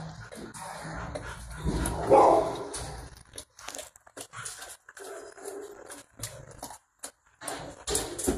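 A dog barking, loudest about two seconds in, amid short clicks and knocks.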